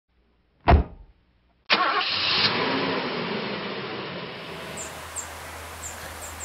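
A short sharp thump, then a car engine starting up suddenly and running on, its sound slowly falling away as it settles. Short high chirps, like birds, come in near the end.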